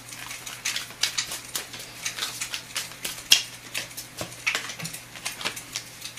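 A deck of tarot cards being shuffled by hand: irregular soft clicks and rustles of card stock, with one sharper snap a little past the middle.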